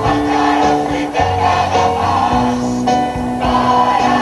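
A mixed choir of men's and women's voices singing a rock song with a live band of keyboard and electric guitar, amplified through a PA.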